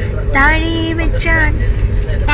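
A voice in sing-song, holding one long, nearly level note about half a second in, over the steady low rumble of a moving train carriage.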